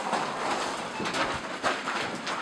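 Footsteps crunching on the loose rock and gravel of a mine tunnel floor, a run of steps in a steady walking rhythm.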